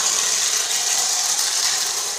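Wind-up tin plate toy tram running under its own clockwork spring, its geared motor and wheels on the track making a steady, high-pitched mechanical noise.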